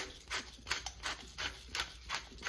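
Hand-held pepper mill grinding peppercorns onto raw chicken: a quick, even run of short crunching clicks, about four or five a second, as the mill is twisted.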